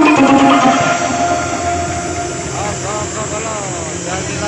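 Carnival sound system playing a loud sound-effect jingle: a held, horn-like chord of steady tones, then a run of quick swooping tones.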